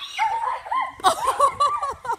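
Children's excited high-pitched squeals and laughter: a quick string of short, yelping calls that comes mostly in the second half.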